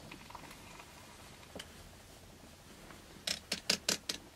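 A small dog stirring under blankets: mostly quiet, then four quick, short noises in a row near the end.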